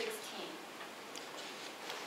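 Room tone with a few faint, sharp clicks spread about a second apart.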